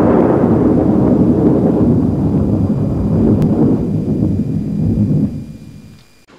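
Title-card sound effect: a long, loud rumbling boom like thunder that holds, then fades away about five seconds in.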